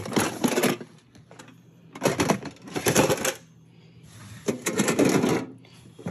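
Tin lunchboxes being handled: metal lids, wire latch and handle clatter and the contents rattle. The sound comes in three bursts of about a second each, at the start, about two seconds in, and about four and a half seconds in.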